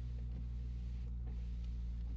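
Chrysler 300M's 3.5-litre V6 idling steadily just after a cold start, an even low hum heard from inside the cabin.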